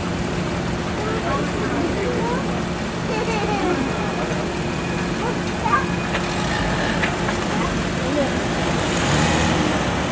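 A car engine idling steadily close by, under scattered background voices of onlookers. About nine seconds in a louder hiss swells as the car moves off.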